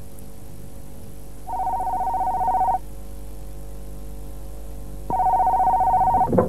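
Desk telephone ringing twice, each ring a warbling two-tone electronic trill lasting just over a second, over a faint steady music bed.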